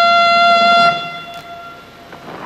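A trumpet holding one long, steady note that ends about a second in and fades away.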